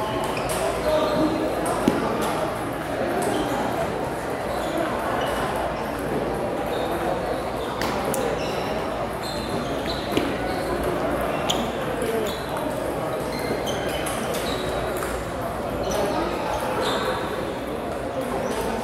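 Celluloid-type table tennis balls clicking off paddles and tables in irregular rallies, the sharp ticks ringing out over a steady murmur of voices in a large hall.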